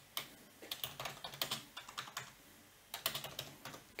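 Typing on a computer keyboard: short runs of keystroke clicks separated by brief pauses.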